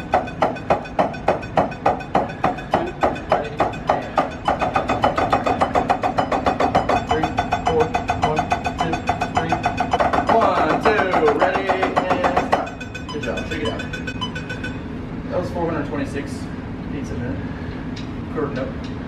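Drumsticks striking a practice pad in a steady beat, about four strokes a second, then faster. The strokes stop suddenly about two-thirds of the way through, leaving quieter talk.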